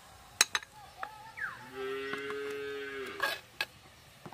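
A cow mooing once in the background, one steady call lasting about a second and a half in the middle. A steel spoon clinks a few times against a stainless-steel bowl.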